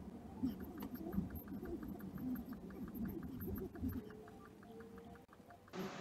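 Faint rumble of a car in motion, heard from inside the cabin, with a quick regular ticking of about five ticks a second. The rumble drops away about four seconds in while the ticking goes on.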